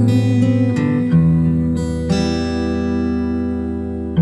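Instrumental section of a folk-pop song: acoustic guitar strumming chords that are left to ring, with new chords struck about a second and two seconds in.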